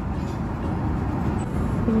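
Steady low roar of an airliner cabin in flight: engine and airflow noise, with no pitch changes or sharp sounds.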